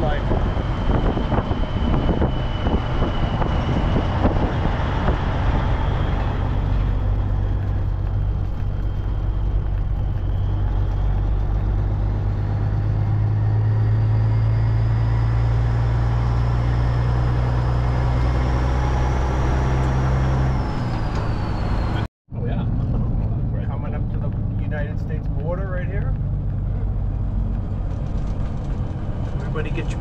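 A heavy truck's diesel engine running steadily while driving, heard inside the cab as a low drone, with a faint high whine rising slowly in pitch in the middle. About two-thirds of the way through the low engine note drops away, there is a brief cut to silence, and then the truck runs on.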